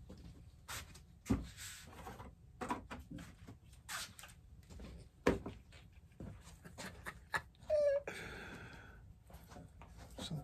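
Irregular light clicks and knocks of small tools and a tube of filler being picked up and handled at a workbench. There is a short squeak just before eight seconds, followed by about a second of rustling.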